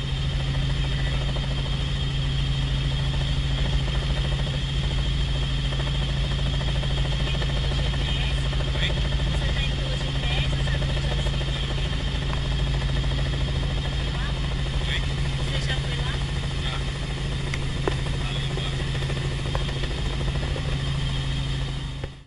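A helicopter in flight heard from inside the cabin: a steady engine and rotor drone with a constant low hum. Brief faint voices of the people aboard come through once or twice.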